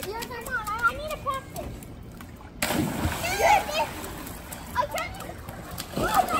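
Children's voices calling out over water splashing in a swimming pool, with an abrupt cut in the sound about two and a half seconds in.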